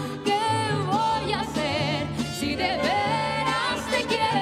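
A woman singing a Mexican huapango live with mariachi accompaniment of guitars and violins. Her long held notes carry a wide vibrato over a steady bass line.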